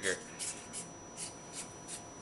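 Hands handling a paintball marker's metal body: a few light, irregular scrapes and clicks as it is gripped and turned.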